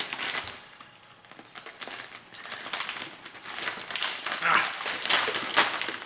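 Plastic pepperoni package crinkling as it is pulled open and handled, in short irregular crackles.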